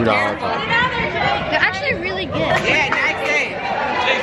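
Crowd chatter: many voices talking and calling out over one another, with no single voice clear.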